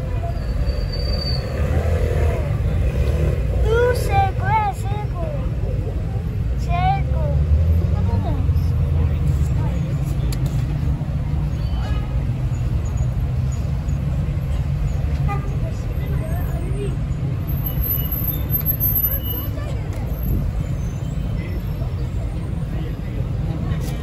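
City street ambience: a steady low rumble of road traffic, with passers-by's voices briefly heard about four and seven seconds in.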